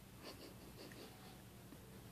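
Faint wet smacking and sucking of a baby mouthing its own toes: a few small clicks in the first second, over near-silent room hum.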